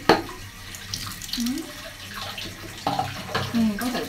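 Water poured from a plastic dipper over a small child's head, splashing into a plastic baby bathtub: one loud splash right at the start, then smaller splashes and dribbling water, with another splash about three seconds in.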